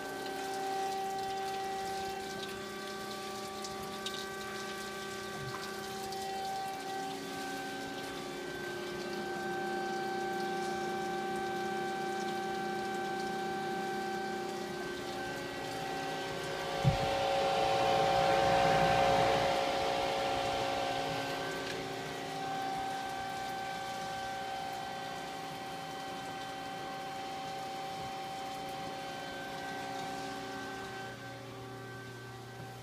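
2005 DoAll 13 × 13 inch horizontal band saw running, a steady hum of several tones under the hiss and spatter of coolant splashing over the blade and work. About halfway through there is a single sharp thump, followed by a few seconds of louder rushing noise.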